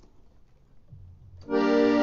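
Quiet for about a second and a half, then a loud held chord on a musical instrument starts abruptly and sustains without fading: the opening of a song.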